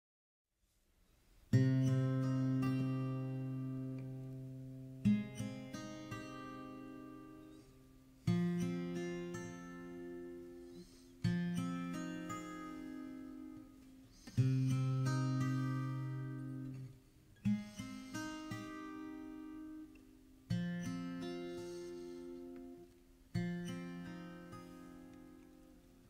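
Acoustic guitar playing a slow intro: a chord struck about every three seconds and left to ring out and fade, with a few quick extra strums between, beginning after a second and a half of silence.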